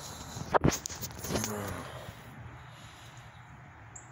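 Two sharp knocks close together about half a second in, then a brief low pitched sound, over a faint steady background.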